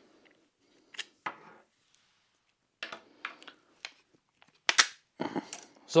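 Scattered small clicks and ticks of a Leatherman multitool and hard plastic crossbow parts being handled as an over-tightened screw is undone and the 3D-printed lock part is taken off, with a louder brief scrape just before the end.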